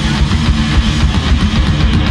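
Live heavy-metal music from a cello and a drum kit played together by one performer: a fast, low cello riff over steady drumming.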